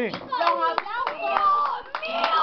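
Scattered, irregular hand clapping from a small group, with excited children's voices calling out over it.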